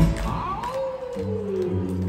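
Wolf howl sound effect in the routine's soundtrack: one long call falling in pitch, with a low held music note entering under it.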